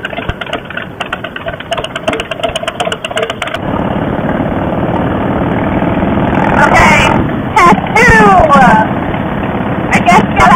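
Motorcycle engine running at riding speed with wind rushing over the microphone, growing louder and steadier about a third of the way in.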